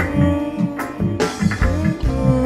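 Live reggae band playing, with a bass line, drum kit and electric guitar over held, sustained notes.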